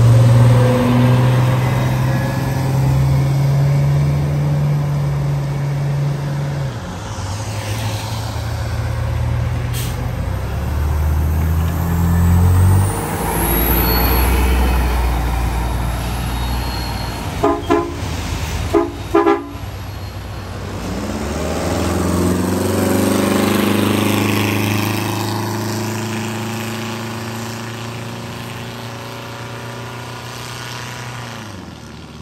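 Classic diesel transit buses driving off one after another on a wet road: engines running and pulling away, with tyre hiss on wet pavement. About halfway through a horn gives four short toots in two pairs. Near the end one bus's engine rises in pitch as it accelerates away.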